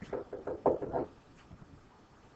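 Stylus tapping on a pen tablet or interactive screen while writing: a quick run of about six light knocks in the first second, then quiet.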